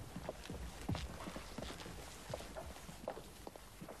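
A man's shoes taking slow, uneven footsteps across a hall floor, a step about every half second, fairly faint over a steady low hiss.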